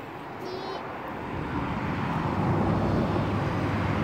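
A car passing on the street, its engine and tyre rumble growing steadily louder as it approaches.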